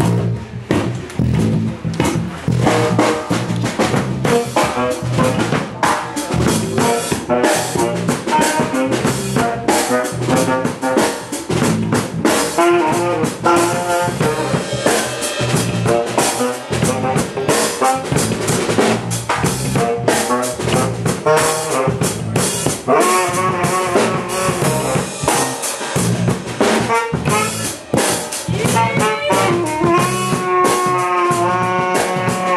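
Live band jamming: a drum kit keeps up a busy beat of snare and cymbal hits under an electric bass, while a trumpet plays melodic lines and ends on a held note.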